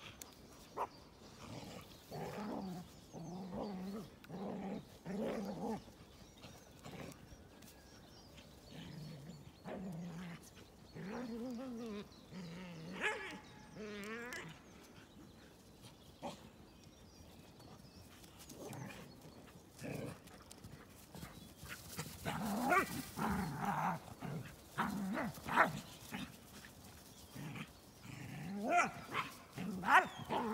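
Several dogs growling and grumbling in short bouts as they play-fight, with a lull in the middle and the busiest stretch about two thirds of the way through.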